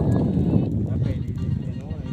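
Fishing boat's engine running with a fast, steady low chugging, with people's voices over it.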